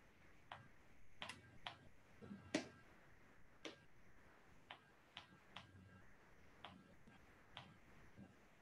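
Near silence broken by about ten faint, irregular clicks: the taps of a stylus drawing on a tablet screen.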